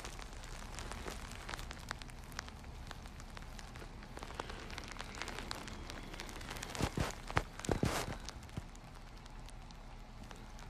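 Faint crackling and rustling from a handheld phone moved close against skin and bedding, with a few louder soft swells about seven to eight seconds in.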